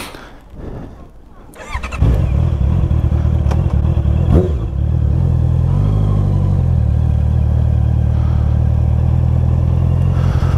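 Honda CBR650R's inline-four engine starting about two seconds in, then running steadily at low revs, with a small change in pitch near six seconds.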